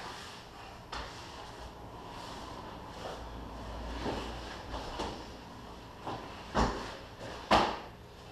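Grapplers' bodies shifting and scuffing on a training mat, with a few short thumps; the two loudest come near the end, about a second apart.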